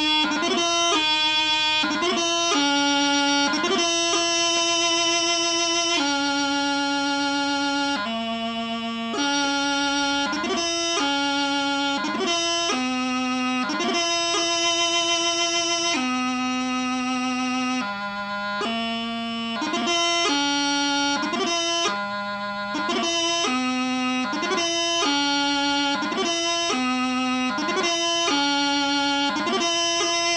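Piobaireachd played on a bagpipe practice chanter, with no drones: a single reedy melody line of steady held notes broken by quick grace-note flourishes, playing the singling of a variation.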